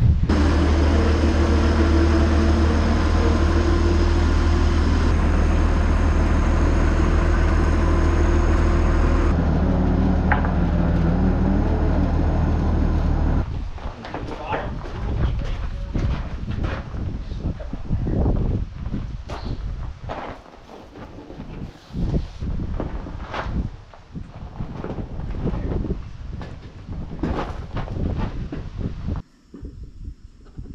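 Tractor diesel engine running steadily from the cab for about the first thirteen seconds, its note changing slightly partway through. It then cuts off abruptly, giving way to scattered clanks and knocks of a dual tire being lifted onto and fastened to a tractor's rear wheel.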